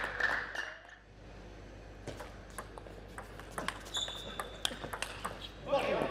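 Table tennis ball struck back and forth in a rally: sharp clicks of the celluloid-type plastic ball on rackets and table, about two a second.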